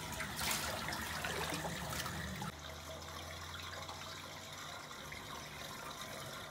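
Water trickling steadily in a hot pool, spilling over the tiled edge into the slatted overflow gutter, over a steady low hum.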